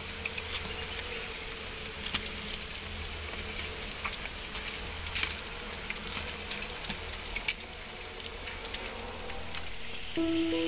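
Forest insects droning steadily at a high pitch, with a few light clicks and knocks scattered through. The sharpest are two knocks close together about three-quarters of the way in.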